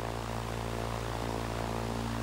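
Light single-engine propeller aircraft in flight: a steady engine and propeller drone at constant power.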